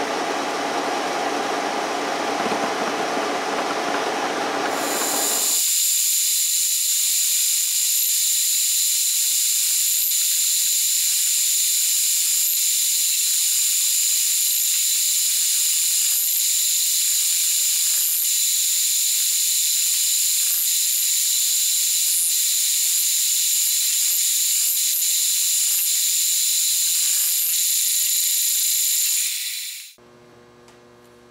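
Milling machine spindle running an indexable-insert cutter head as it mills a flute into a steel bearing roller being made into a ball-nose end mill. About five seconds in, the low part of the sound drops away, leaving a steady high hiss with a thin high whine. It stops abruptly just before the end.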